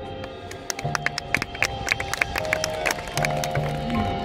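High school marching band playing: held chords from the winds and low brass, with a quick run of sharp percussion hits through the middle.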